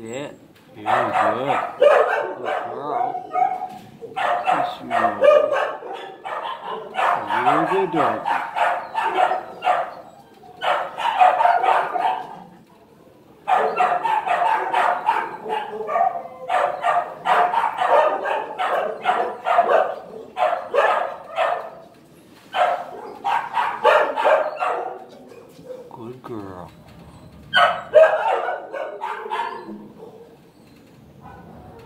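Many shelter dogs barking in a kennel block, a dense chorus of rapid barks in runs of several seconds with short pauses, and a few wavering rising-and-falling cries mixed in.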